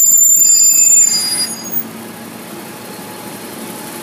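Heavy road vehicle's brakes giving a loud high-pitched squeal with an air hiss, for about a second and a half, followed by the low sound of its engine running.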